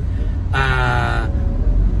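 A person's voice holding one long, wavering vowel for under a second, a bleat-like drawn-out sound, over the low steady rumble inside a van.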